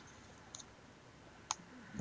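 A few quiet computer-mouse clicks: one at the start, a faint one about half a second in, and a sharper one about a second and a half in.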